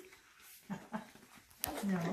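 Quiet room sound with two short, soft vocal sounds from a person about a second in, then a sharp click near the end.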